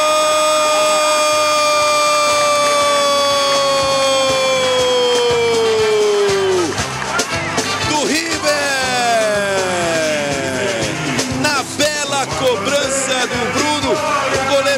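A football commentator's drawn-out goal cry, one held "gooool" lasting about eight seconds that sinks in pitch as it ends. It is followed by more excited shouting with falling pitch.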